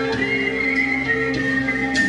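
Live band music: guitar and electric bass with a high whistled melody gliding over them.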